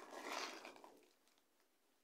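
Plastic bread-roll bag crinkling faintly as a roll is pulled out of it, fading out about a second in and leaving near silence.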